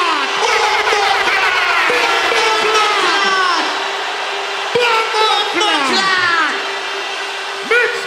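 Sound-system effects through a large arena PA: a string of falling, laser-like pitched sweeps over a steady held tone, with a wailing siren effect starting near the end.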